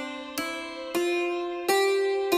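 Film background music: a slow melody of single plucked-string notes, about three in two seconds, each ringing and fading, the tune stepping upward.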